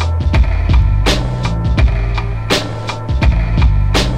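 Boom bap hip hop instrumental beat: a drum loop of kick and snare over a bass line and steady sustained tones, with the snare striking about every second and a half.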